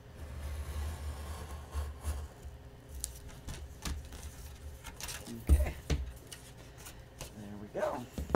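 Craft knife blade dragging through chipboard, a low scraping for about three seconds, followed by several sharp taps and clicks as the cut board and knife are handled on the cutting mat.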